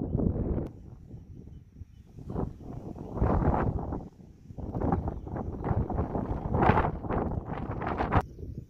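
Wind buffeting a phone microphone in irregular gusts, a low rumbling that surges and drops, loudest around three seconds in and again near the end.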